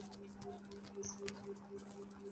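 Faint, irregular clicking of a computer keyboard and mouse, typed and clicked while YouTube is opened, over a low steady electrical hum.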